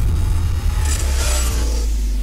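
Title-card sound effect: a loud, deep, steady bass rumble with a swooshing hiss that swells about a second in.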